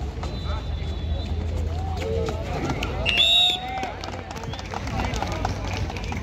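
A referee's whistle blown once, short and loud, about three seconds in, over shouting voices of players and spectators at a kabaddi match.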